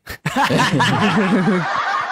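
Several young men laughing together at once, loud overlapping bursts of laughter that break out a moment after a short pause.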